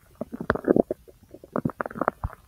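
Gurgling bowel sounds from a person's large intestine: quick, irregular pops and gurgles, with a longer bubbling gurgle about half a second in and a cluster of pops near the end.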